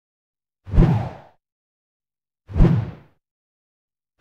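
Two whoosh transition sound effects about two seconds apart, each a quick swish with a low thud at its start that fades away, with silence between them.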